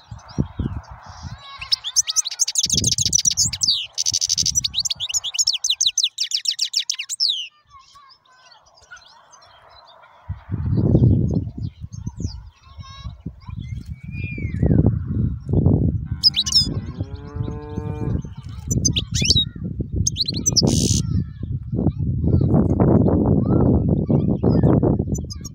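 Caged European goldfinch singing a fast, high twittering song for a few seconds near the start. From about ten seconds in, a loud, uneven low rumble covers the rest, with a short pitched call and a few chirps in the middle.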